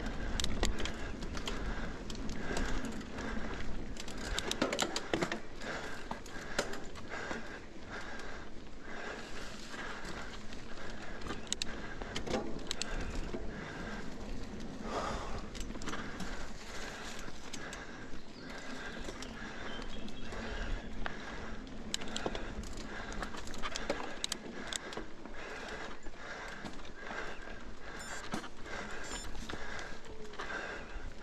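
Mountain bike ridden fast along a dirt forest singletrack: tyres rolling over the trail, with the chain and frame rattling and clicking over bumps all the way through.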